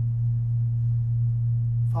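A steady low electrical hum, one unchanging tone, fills the pause. A man's voice begins right at the end.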